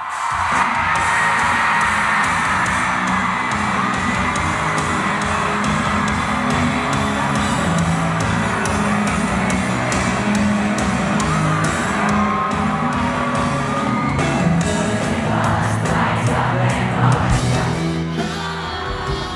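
Live rock band playing at an arena concert, with drums, guitar and piano under singing, and a crowd yelling and cheering.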